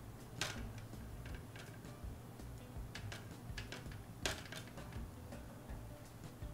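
Scattered light clicks and taps from a paintbrush and painting gear against the paint palette, the sharpest about four seconds in, over faint background music.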